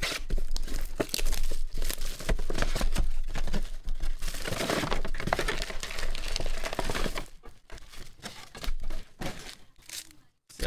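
Clear plastic shrink wrap being torn and crumpled off a trading card box: dense crinkling for about seven seconds, then a few scattered crackles and taps.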